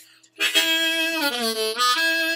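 Diatonic harmonica in the key of A playing a loud sustained note that starts about half a second in, bends down in pitch around the middle and comes back up near the end.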